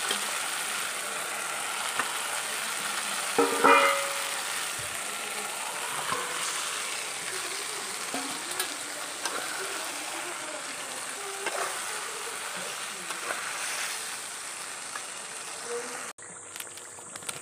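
Masala and raw chicken pieces frying and sizzling in a metal pot, stirred by a steel spatula with scattered scrapes and clicks. A louder brief clatter comes about three and a half seconds in.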